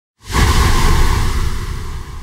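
Cinematic whoosh-and-boom sound effect of a logo intro, starting abruptly about a quarter second in with a deep rumble, then slowly fading.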